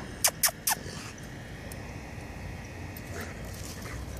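A black Labrador puppy sniffing the grass close to the microphone: three quick, sharp sniffs in the first second, then only a low background hum of the open air.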